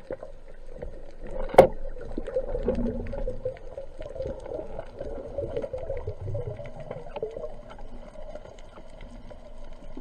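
Underwater sound picked up by a diver's camera: a steady muffled hiss scattered with small crackling ticks, one sharp click about one and a half seconds in, and low rumbles around three and six seconds in.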